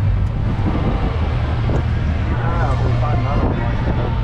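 Golf cart driving along with a steady low hum under the ride. Voices are heard from about two seconds in.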